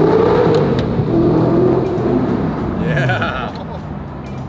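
Audi R8's V8 engine accelerating hard: its pitch climbs, breaks at a gear change about half a second in, climbs again, then falls away as the throttle is lifted near the end. Heard from inside the cabin in a tunnel.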